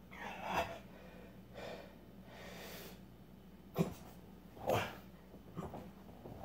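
A man breathing hard while doing fast sit-ups, with a forceful exhalation on roughly every rep, about once a second. One short, sharp sound about two-thirds of the way through is the loudest moment.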